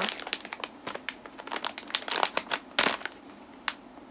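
Plastic snack bag of cotton candy crinkling as it is picked up and handled: a quick run of sharp crackles that thins out after about three seconds.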